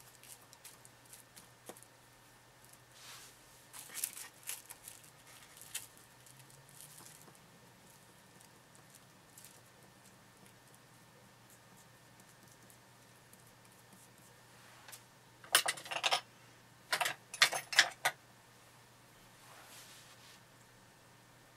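Plastic cling wrap over clay crinkling as it is pressed and jabbed with a wire texturing tool. A few soft crinkles come a few seconds in, then a louder burst of crinkling near the end.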